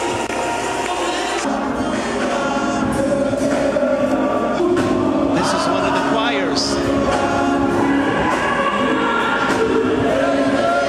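A choir singing a gospel song, many voices holding sustained notes together.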